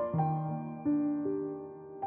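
Slow, gentle solo piano: three notes struck one after another, each left to ring and fade.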